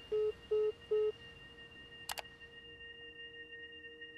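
Three short, evenly spaced beeps of a phone's call-ended tone, followed about two seconds in by a single sharp click, over faint steady high tones.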